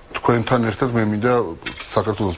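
A man talking in a studio, with a few light clicks near the end.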